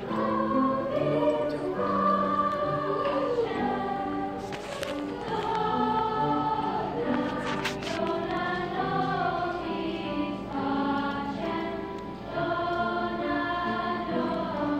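Sixth-grade school choir singing, many children's voices together on held notes that move from pitch to pitch.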